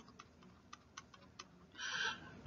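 Faint, irregular light clicks and taps of a stylus on a pen tablet while handwriting, about six in two seconds, with a short hiss near the end.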